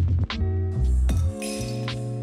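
Ice cubes tipped from a scoop into a stainless steel cocktail shaker: a clinking, ringing rattle lasting about a second, starting near the middle, over background music with a beat.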